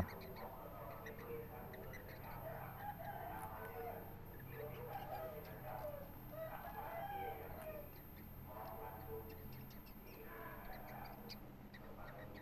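Yellow-sided green-cheeked conure chick making soft, wavering chirping calls in a string of short bouts, over a faint steady low hum.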